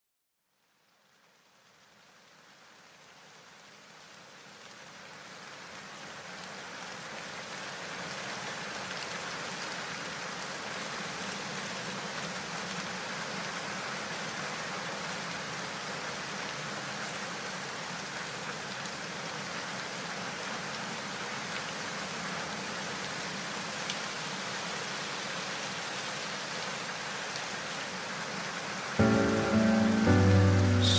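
Recorded rain, a steady hiss of falling rain, fades in gradually over the first several seconds as a song's intro. Near the end, the song's instruments come in over it.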